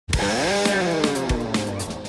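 Heavily overdriven electric guitar, through the Menatone Fish Factory double overdrive pedal, playing one buzzy sustained note. The note is bent up in pitch within the first half-second, then sinks slowly and fades.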